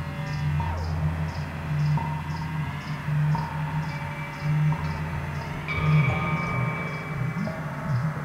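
Improvised ambient electronic music: a steady low drone under held, slowly shifting tones with occasional pitch glides, and soft high ticks pulsing about twice a second.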